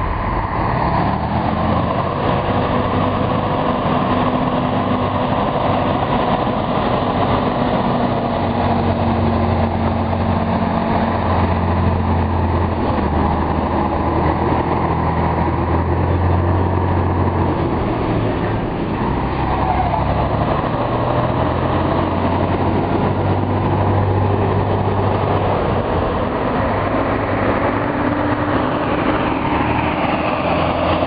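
Heavy truck engines running close by as trucks pull an oversize load past at low speed, the engine note rising and falling.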